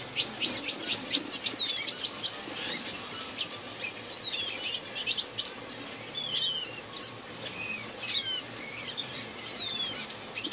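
Small aviary finches and canaries chirping and calling together in many overlapping short notes. The chatter is dense and rapid in the first couple of seconds, and clearer downward-sliding whistles follow through the rest.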